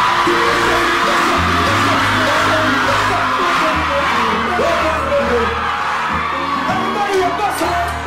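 Dancehall music with a bass line playing loud over a sound system, under continuous screaming and cheering from a large crowd of students.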